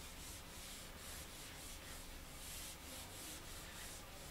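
Whiteboard eraser rubbing across a whiteboard in repeated back-and-forth strokes, about two or three a second, a faint dry scrubbing as marker writing is wiped off.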